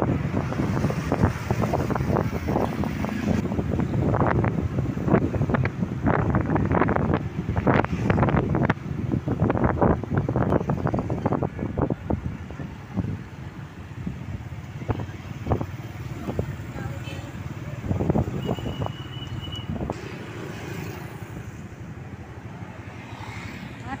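Wind buffeting the microphone over the low rumble of engine and road noise from a motorcycle riding through town traffic, the gusts easing in the second half. A short, high, steady tone sounds about two-thirds of the way through.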